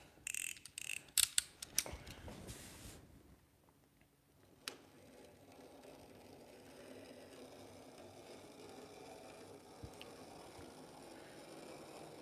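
Razor blade cutting masking tape on a primed car body panel: a few quick scratchy strokes in the first three seconds. After that, only faint room noise with a couple of small clicks.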